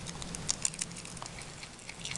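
A groundhog munching and crunching leafy greens: rapid crisp crunching clicks of chewing, busiest in the first second and sparser near the end.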